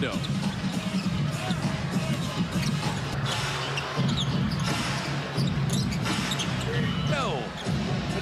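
Basketball being dribbled on a hardwood court, against the steady din of a large arena crowd.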